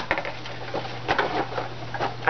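Cardboard box of Lindor chocolates being handled: a cluster of sharp clicks at the start, then scattered taps and rustles of cardboard and wrapping. A steady low hum runs underneath.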